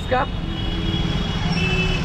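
Street traffic noise in a jam: a steady low rumble of idling and creeping engines from the surrounding cars, motorbikes and auto-rickshaws, with a few faint thin tones above it.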